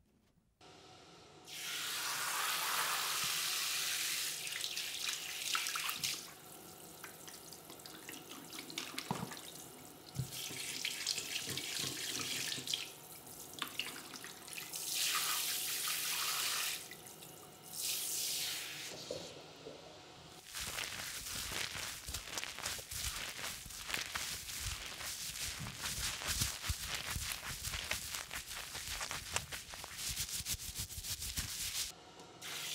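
Water running from a tap in several bursts, switched on and off. From about two-thirds of the way through, a steady crackling spatter of water with many small splashes follows, like water splashing onto hands and a surface.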